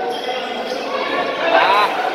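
Basketball game in an echoing hall: a ball bouncing on the court under the voices of players and spectators, with a short squeak about one and a half seconds in.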